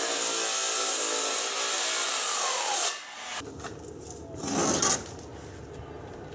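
Circular saw cutting through thin 5 mm plywood at a shallow blade depth. It runs steadily for about three seconds, its pitch sinking just before it stops. About four and a half seconds in comes a brief scrape of wood.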